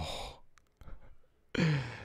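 A man's breathy exhale, a sigh, at the start, then a short sudden cough about a second and a half in.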